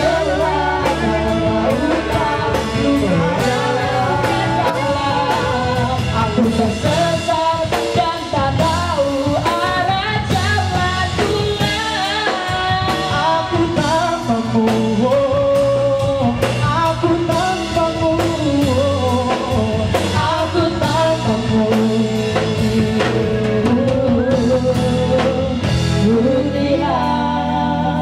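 Live pop-rock band: a male and a female singer singing through microphones over electric guitar, bass guitar and a drum kit, played steadily through a PA.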